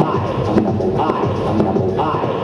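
Turntablist battle routine: hip hop records played and manipulated live on two turntables through a DJ mixer, a short phrase repeating about twice a second.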